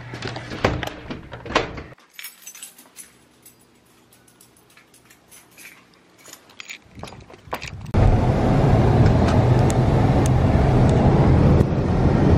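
Scattered light clicks and rattles of handling. About eight seconds in, the sound cuts abruptly to the steady engine and road noise of a car being driven, heard from inside the cabin.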